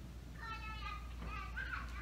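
A young child's voice in the background: two short high-pitched calls, the second bending up and down in pitch, over a steady low hum.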